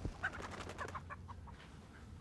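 Faint clucking of barnyard fowl: a few short clucks in quick succession, dying away after about a second and a half.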